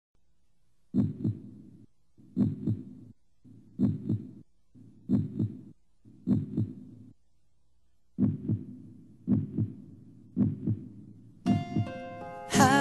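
Heartbeat sound effect: paired lub-dub thumps about once every second and a bit, with a longer pause about seven seconds in. Music comes in just before the end.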